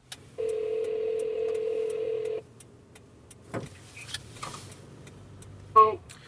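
A telephone ringback tone heard through a car's hands-free system: one steady two-second ring while an outgoing call waits to be answered. After it, a faint low cabin hum with a few clicks, and a short loud sound just before the end.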